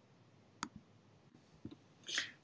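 Near silence with two brief clicks, one about a third of the way in and a fainter one near the end.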